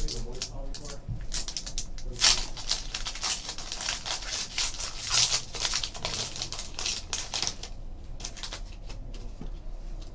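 A trading card pack being opened and its cards handled: a dense run of crinkling, rustling scrapes and small clicks that thins out after about seven and a half seconds.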